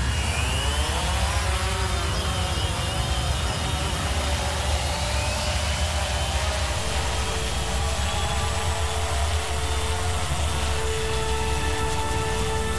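Sound-designed rumble of a flying craft: a deep, steady engine-like drone with sweeping pitch glides in the first few seconds. A held tone joins about seven seconds in, and a higher one near the end.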